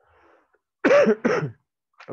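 A man clearing his throat, a short two-part rasp a little under a second into the pause, after a faint breath.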